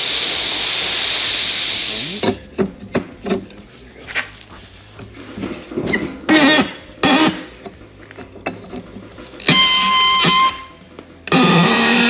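Gas heating torch flame hissing loudly, then cut off about two seconds in. Then the metallic clicks and knocks of a large wrench being fitted onto the heated, rusted fitting, followed by loud high-pitched squeals, twice near the end, as the seized threads are forced round.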